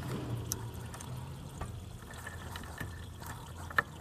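Residual engine coolant trickling and dribbling from the upper radiator hose as it is pulled off the thermostat housing, caught in a rag. A few faint clicks of handling, with one sharp click near the end.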